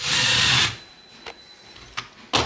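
A LEGO SPIKE robot's drive motors whirring for under a second as the four-wheel robot spins through a roughly 90-degree gyro-controlled turn, then cutting off. A faint thin high tone lingers afterwards, with one light click.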